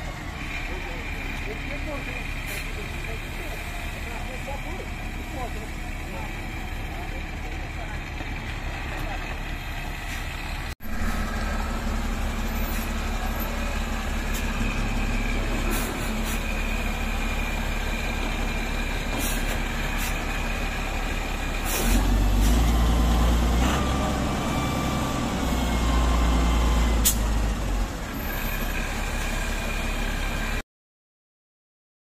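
Diesel engine of an XCMG LW300KV wheel loader running steadily while loading debris, louder for several seconds near the end as it works under load.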